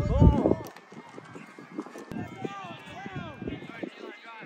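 Soccer players and people on the sideline shouting during play: one loud shout right at the start, then scattered overlapping calls from across the field.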